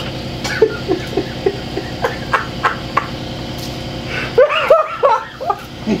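A man laughing: a run of short, evenly spaced 'ha' bursts, about three a second, then a louder fit of laughter near the end, over a steady low hum.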